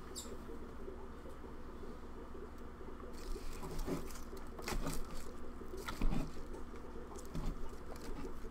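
Scattered light clicks and taps of small objects being handled at a desk, irregular and thicker in the second half, over a steady low hum.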